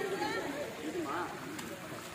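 Voices talking in the background, too faint and indistinct to make out words.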